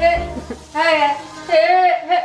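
A woman's voice making high-pitched, drawn-out wordless sounds, twice, like playful singing or squealing.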